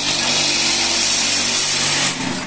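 Electric vibrator motors on a mobile cinder-block making machine running, shaking the steel mould full of concrete mix to compact the blocks: a loud, steady hum with a hiss over it.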